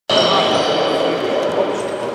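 Reverberant sports-hall ambience during basketball practice: background voices and a basketball bouncing on the court, with a steady high tone that fades about a second and a half in.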